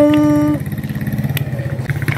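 A small engine idling with a fast, even pulse, under a held steady-pitched tone that stops about half a second in; a single click a little past the middle.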